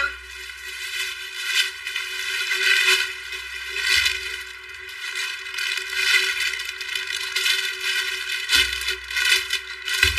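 Plastic garment bags crinkling and rustling irregularly as bagged clothes are picked up and handled.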